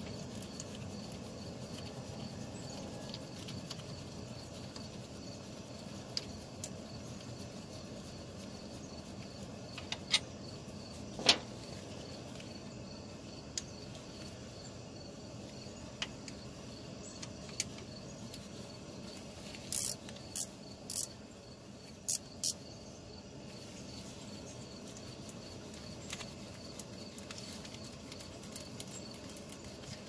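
Scattered metallic clicks and taps of a hand wrench and socket on the car's underside bolts as they are worked loose, over a steady low background hum. The sharpest click comes about a third of the way in, and a quick run of clicks comes about two-thirds of the way through.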